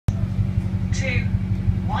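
Double-decker bus engine and running gear rumbling with a low, pulsing throb, heard inside the bus on the upper deck.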